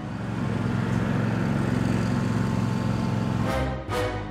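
Riding lawn mowers' four-stroke V-twin engines running steadily, with background music with a regular beat coming back in near the end.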